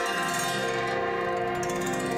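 Background music of the drama's score: held notes with ringing, bell-like chimes, a lower note coming in near the start.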